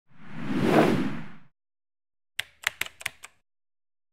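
Designed sound-effect whoosh that swells and fades over about a second and a half. After a pause comes a quick run of sharp clicks, the sound design of an animated logo intro.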